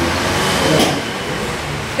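Steady background noise in a meeting room, with paper being handled and one sharp rustle just under a second in.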